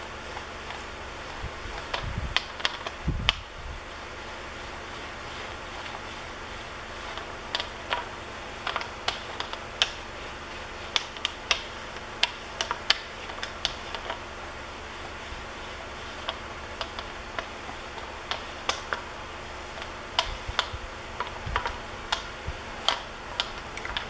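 A small hand roller with a wire handle being worked along the edge of a clay slab on a hump mold, giving irregular light clicks and taps over a steady background hiss, with a couple of dull low thumps about two and three seconds in.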